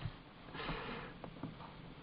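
A faint intake of breath close to the microphone, about half a second in, over a low background hiss.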